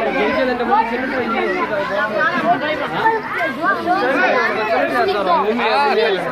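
Several people talking over one another: close, steady crowd chatter.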